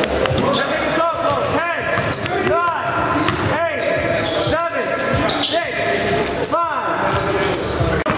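Live basketball game sounds on a gym floor: a ball bouncing and sneakers squeaking roughly once a second, with players' voices in the echoing hall.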